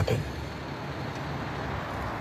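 Steady outdoor road noise, a low even hum of vehicle traffic with no distinct events.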